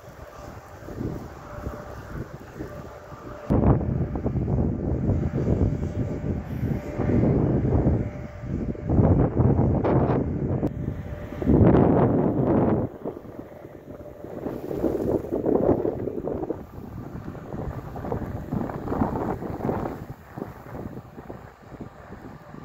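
Gusty wind buffeting the microphone in irregular surges, loudest through the middle stretch, with a faint steady tone under it in the first few seconds.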